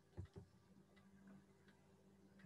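Near silence: a faint steady low hum, with two faint short clicks in the first half second.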